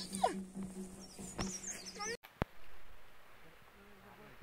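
A small child's high squeals and whines, broken off abruptly a little over halfway through, followed by quieter outdoor background with a few clicks.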